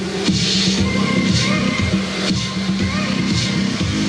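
Electronic dance music playing loudly, with a pattern that repeats about every two seconds.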